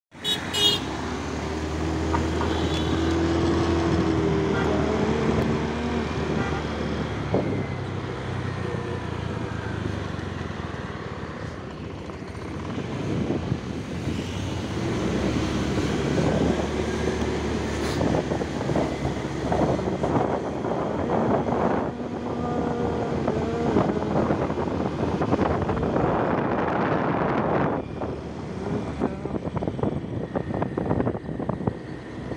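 Small motorcycle engine running while riding along a road, with road and wind noise.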